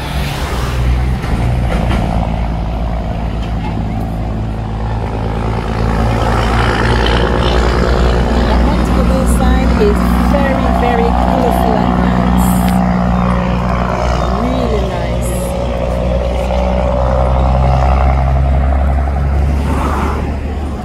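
Steady low drone of a moving vehicle's engine and road noise, with a few faint voice fragments in the middle.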